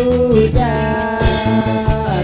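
Live rock band playing: drum kit beating steadily under electric guitar, with two long held melody notes, the second higher and starting about half a second in.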